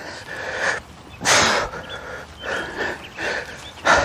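A man breathing hard, with heavy panting breaths, straining to drag a heavy log splitter by hand up a slight grade over soft ground.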